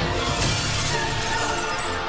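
Glass shattering about half a second in, a skylight pane breaking as a body crashes through it, over steady music.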